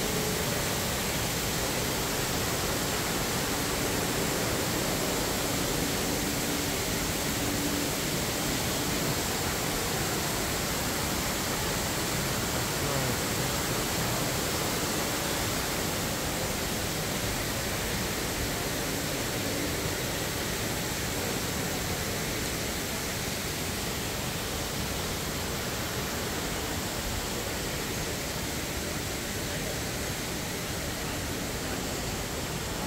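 Steady hiss of an indoor rain-curtain waterfall, many thin streams of water falling from the ceiling into a pool, easing slightly toward the end.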